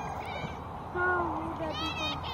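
A person's voice saying a drawn-out "oh", falling slightly in pitch, about a second in, over a steady low background rumble.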